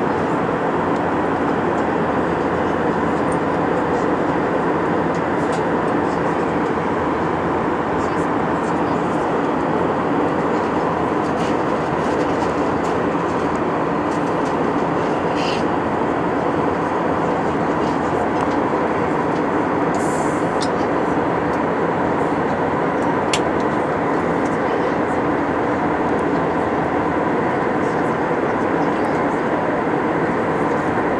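Steady cabin noise of an Airbus A319 in flight: the even hum and rush of the jet engines and airflow, heard from a window seat beside the wing engine, with a few faint ticks.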